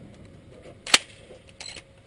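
A single shotgun shot about a second in, followed by a few much softer clicks.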